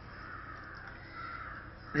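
Faint bird calls in two drawn-out stretches of about a second each, in the pause between spoken phrases.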